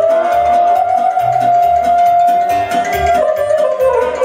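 Live folk dance music for a circle dance, with accordion: one long held high note over a steady bass beat, stepping down to a lower note about three seconds in.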